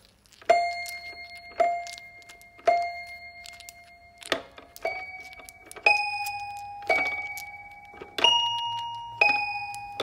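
Toy piano played one key at a time with a finger: eight struck notes about a second apart, each ringing and slowly fading. The first three are on the same pitch and the later ones are higher. A short click falls about four seconds in.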